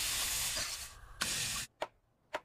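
Pancake batter sizzling in a hot frying pan as it is poured in, a steady hiss that fades about a second in. A second short sizzle follows, then a sharp tap of a knife on a wooden cutting board near the end.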